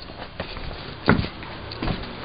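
Footsteps on a wooden deck: a few dull thuds, the loudest about a second in.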